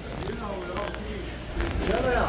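Background voices talking, fainter than the narration around them, over a steady low rumble and general hall noise.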